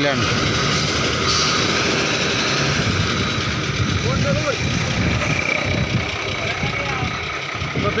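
Diesel engine of a heavily loaded Ashok Leyland 12-wheel truck running steadily at a standstill.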